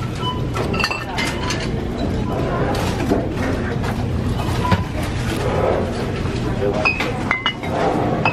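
Glass bottles clinking against each other and the metal wire of a shopping cart as it is pushed along, with many short, ringing clinks scattered through.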